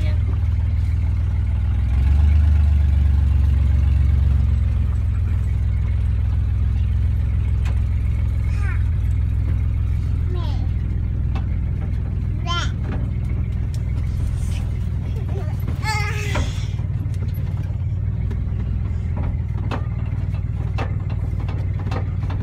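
Steady low engine and road rumble inside the cabin of a moving 1971 Jeepster Commando, swelling louder for about two seconds near the start. Short children's calls and squeals come up a few times over it.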